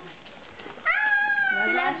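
A high, drawn-out, voice-like cry lasting about a second, starting about a second in, held at a nearly steady pitch and sagging slightly at the end.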